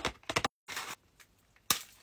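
Ice lolly packaging being handled: a quick run of sharp clicks and crackles that breaks off suddenly, then a short rustle and a single sharp snap with a brief rustle near the end.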